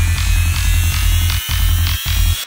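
Dark psytrance music: a deep, sustained electronic bass drone under a layer of noisy texture, with a faint high tone slowly rising. The bass breaks off for a moment about one and a half seconds in.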